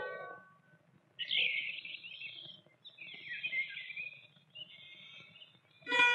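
Small birds chirping in a loose chorus of high calls after the music fades out. A plucked-string music cue comes in at the very end.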